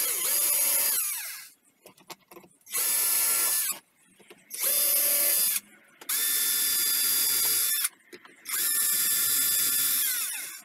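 Cordless drill running in five bursts of one to two seconds each, drilling into a panel; each burst holds a steady whine and winds down at the end.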